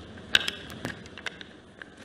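A run of about eight short, sharp clicks at irregular spacing, the loudest two near the start.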